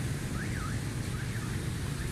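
Steady low rumble of city street traffic, with a faint electronic siren sweeping up and down in pitch several times over it.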